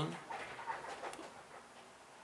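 Faint dog-like woofs from a veranda window creaking as strong wind pushes on it, with light strokes of a felt-tip marker on paper.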